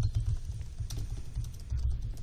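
Typing on a laptop keyboard: a continual run of light key clicks, with low thuds underneath.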